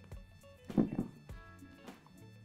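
Background music with a steady beat, with one short, louder knock of hand-tool work about three-quarters of a second in.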